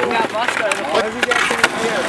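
Young men laughing and hooting, with a few sharp clacks of a skateboard and its wheels rolling on concrete.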